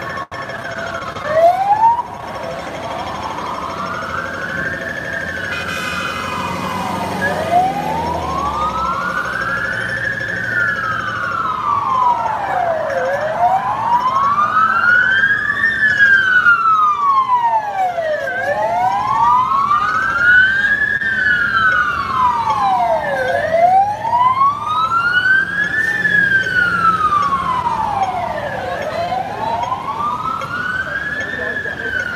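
Emergency vehicle siren on a slow wail, loud and close, its pitch rising and falling about every five seconds; for the first several seconds the sweep sounds doubled. A short loud burst of noise about a second in.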